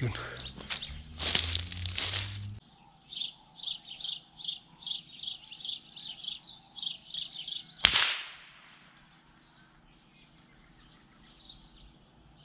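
A run of high, quick chirps, two to three a second, broken about eight seconds in by a single sharp shot from a Ruger 10/22 .22 rimfire rifle, the loudest sound. The chirping stops after the shot.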